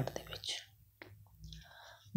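A man's speaking voice trails off at the end of a word, followed by a quiet pause in a small room. The pause holds a faint click about a second in and a soft breathy hiss near the end.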